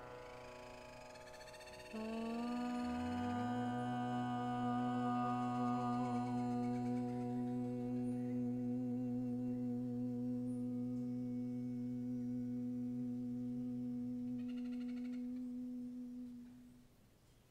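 Two voices hum a long held note together, one an octave below the other. The higher voice comes in about two seconds in, the lower joins a second later and drops out near the end, and the higher voice carries on alone.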